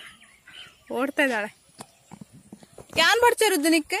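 A high-pitched voice making two drawn-out calls or words with falling pitch, one about a second in and a longer, louder one near the end.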